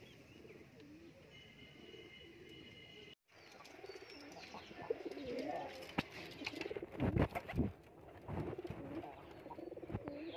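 Domestic pigeons cooing: wavering low calls repeated over and over, louder after about three seconds. A few heavy low thumps come in the middle of the calling.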